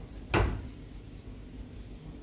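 A pull-out kitchen cabinet being shut, one sharp knock about a third of a second in.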